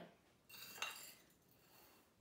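Dry rice pouring from a small metal measuring cup into a cloth sock: a short, soft rustle about half a second in, with a light clink of the cup.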